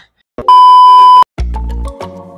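A loud, steady electronic beep tone lasting about three-quarters of a second, cutting off suddenly. About a second and a half in, intro music starts with a deep bass note.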